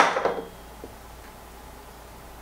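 A single sharp clunk of a glass coffee carafe set down on a countertop right at the start, ringing out for about half a second, then quiet room tone.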